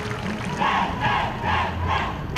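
Many voices shouting together in unison, four short shouts in quick succession, a group call-out before the band plays, over crowd noise.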